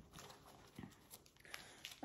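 Near silence: faint rustling and a few light clicks of a cotton t-shirt being handled and turned over.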